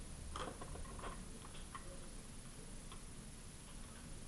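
A few faint, irregular clicks, the loudest about half a second and a second in, over a steady low hum.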